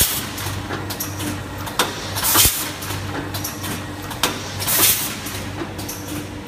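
Rotary pouch packing machine for microwave popcorn running: a steady low hum with scattered mechanical clicks and clacks, and a burst of hiss about every two and a half seconds.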